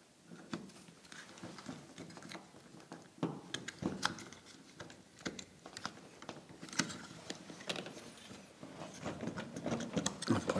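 Scattered clicks, scrapes and rustles of stiff electrical cables and a plastic thermostat mounting plate being pushed and fitted into a plastic flush wall box by hand.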